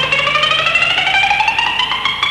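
Guitar playing a fast run of repeated picked notes that climbs steadily in pitch, as an instrumental fill in a live country band performance.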